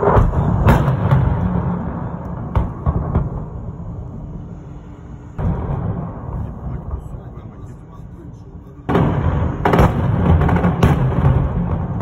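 Tank combat in a city street: several heavy blasts, at the start, about five seconds in and about nine seconds in, each trailing off into a long rumble, with sharper cracks of gunfire between them.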